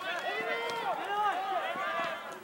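Several voices shouting and calling out at once, overlapping, as from players and spectators at an outdoor soccer game.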